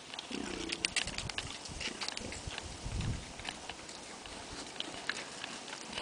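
Common warthogs grunting: a short low grunt about half a second in and another low sound near three seconds in, with scattered sharp clicks throughout.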